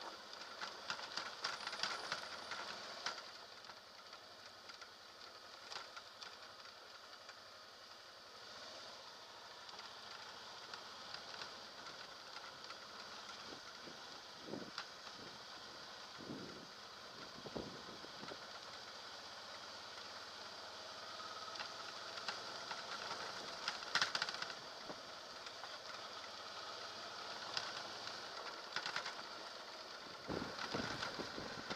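Many small clicks, knocks and rattles of a motorcycle and its mounted camera jolting over a rough, rutted dirt road, over a steady hiss, with one louder knock about three-quarters of the way through.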